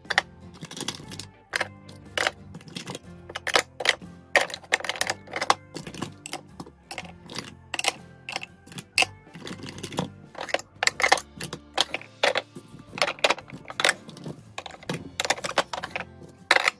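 Hard plastic makeup compacts clacking against a clear acrylic organizer, with its small drawers sliding and knocking shut, as products are put away: a quick, irregular run of clicks and clacks. Music plays softly underneath.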